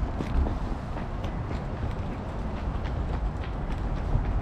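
Steady, low rumbling outdoor city background noise, with faint light ticks about twice a second.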